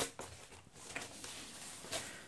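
Faint rustling of foam packing wrap being pulled off a cardboard box, with a slight bump near the end as the box is lifted.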